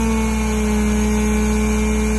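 Hydraulic rock splitter's engine-driven power pack running under load as the splitter works in a drilled hole in the rock: a loud, steady drone whose pitch sags slightly.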